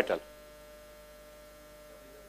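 Faint, steady electrical hum made of a few constant tones, heard in a pause between words; the end of a man's spoken word is at the very start.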